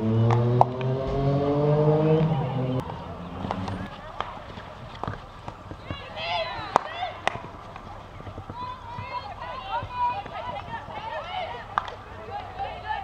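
A vehicle engine runs for the first three seconds, its pitch slowly rising, then cuts off abruptly. After that come distant players' shouts and calls, with scattered sharp clicks of field hockey sticks hitting the ball.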